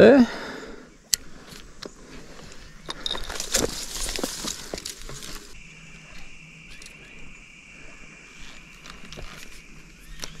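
Spinning rod and reel being cast and set: small metallic clicks from the reel, a rushing noise about three seconds in, then a steady high whirr from about halfway that stops near the end.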